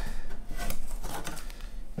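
Binding tape being peeled off a guitar body, a rapid irregular crackle of small ticks.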